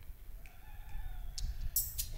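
A faint drawn-out tone, then, from about one and a half seconds in, quick high ticks from an electronic keyboard's rhythm section as the song's intro starts up.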